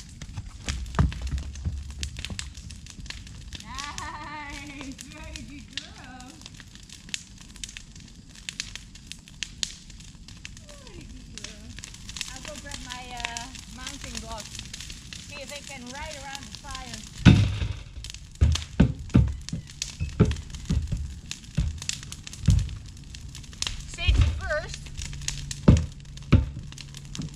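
Brush-pile bonfire crackling, with sharp pops scattered throughout. About two-thirds of the way in, a run of heavy low thumps and knocks starts, louder than the fire.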